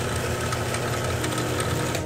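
Electric drill in a drill stand running free with no load, a steady motor hum and whine, its 14 mm bit spinning true in a modified chuck.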